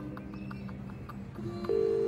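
Telephone ringing in the British double-ring pattern, two short rings close together; one double ring starts near the end, over a low steady background.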